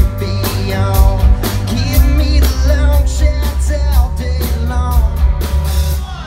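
Live country-rock band playing: electric guitars over bass and a steady drum beat, with a male lead vocal.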